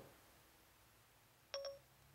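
Near silence, then about one and a half seconds in, the short Siri activation chime from an iPhone 4's speaker: two quick tones in a row.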